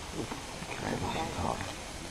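Faint, indistinct voices talking in the distance.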